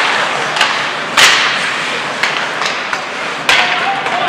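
Ice hockey play: a string of sharp clacks and knocks from sticks, puck and boards, the loudest about a second in with a short echoing ring.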